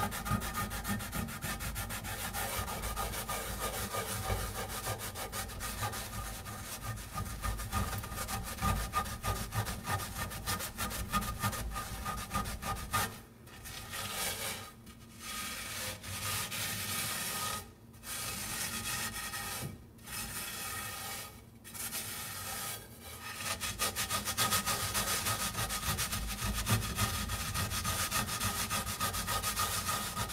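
Coarse salt scoured around a cast iron skillet with a scrub sponge: a continuous gritty scraping in rapid strokes, with several short breaks in the middle.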